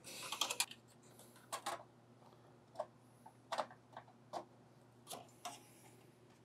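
Faint light clicks and taps of PC hardware being handled: a short rattle of clicks at the start, then single taps about once a second, as a graphics card is worked into the slot of a vertical GPU mount bracket.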